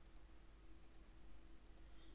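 Near silence: room tone with a faint steady hum and a few faint computer-mouse clicks.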